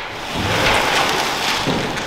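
Custom metal-clad shop door rumbling and scraping as it is pushed on its newly mounted pivot plates, without bearings fitted yet. A steady noisy rumble that builds about a third of a second in.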